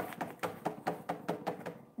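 Hands tapping and shaking a small plastic toy cup to get the rest of its contents out: a quick, irregular run of light clicks and taps, several a second.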